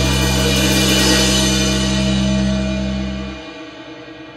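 A rock band's final chord ringing out: amplified electric guitars, bass guitar and cymbals sustaining together after one last hit. The low bass notes stop suddenly about three and a half seconds in, and the rest of the chord fades away, ending the song.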